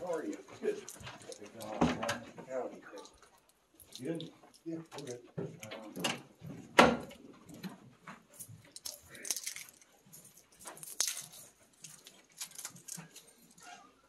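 Low, indistinct talk in short stretches, mixed with scattered light clicks and rattles of small objects being handled, and one sharp click about seven seconds in.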